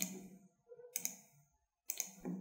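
A few isolated clicks about a second apart, from working a computer's keyboard and mouse, with a quiet room between them.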